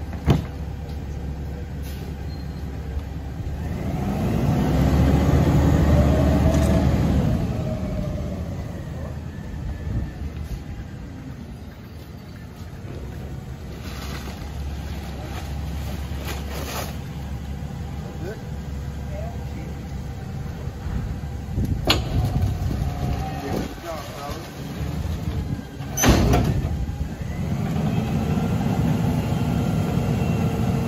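Rear-loader garbage truck running, its engine revving up and back down for a few seconds as the hydraulic packer cycles, then revving up again near the end. A few sharp bangs come in between, from bags and carts being loaded.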